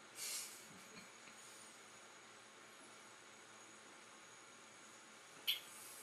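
Near silence: quiet room tone with a steady faint hiss, and one short soft breathy noise just after the start.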